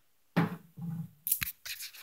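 Phone handling noise: irregular rubbing and scraping on the microphone with a soft knock as the phone is moved about. It begins abruptly after a moment of silence.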